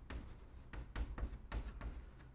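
Chalk writing on a blackboard: a rapid run of short, sharp chalk strokes and taps as Chinese characters are written.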